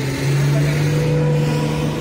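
A motor vehicle engine running with a steady low hum, growing a little louder about a quarter second in and then holding.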